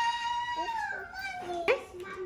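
A young child's long, high-pitched vocal sound, held on one note and then dropping lower near the end.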